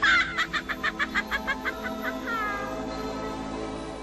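A woman's shrill, rapid cackling laugh, about seven short bursts a second for a second and a half, followed by a falling whoop, over an orchestral film score; the score carries on alone in the second half.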